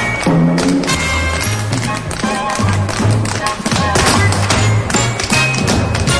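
Instrumental band music, a bass line in held notes under a regular percussive beat.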